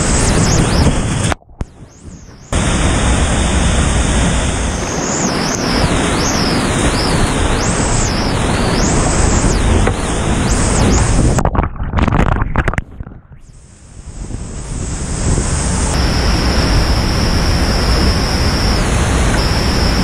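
Loud, steady rush of whitewater churning around a kayak running rapids, picked up close by a GoPro. Twice the roar drops away abruptly to a muffled hush for a second or two: once near the start and again just past the middle.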